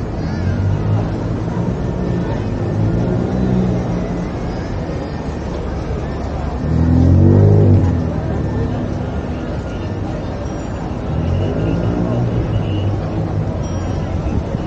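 Busy city street ambience: steady traffic noise with people's voices around. A vehicle engine is loudest about seven seconds in, its pitch rising and then falling as it revs or passes.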